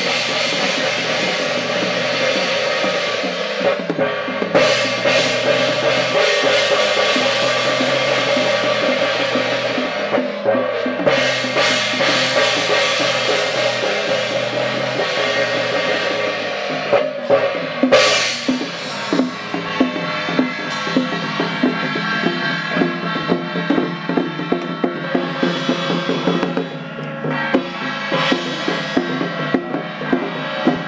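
Chinese temple percussion playing nonstop: a drum beaten in a quick, steady stream of strokes with brass hand cymbals clashing over it, with one loud crash about eighteen seconds in. It is the drum-and-cymbal accompaniment to a spirit medium's trance ritual.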